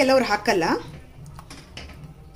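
A voice speaks briefly at the start, then a metal spoon stirring curry in a metal pan gives a few light clicks against the pan's side.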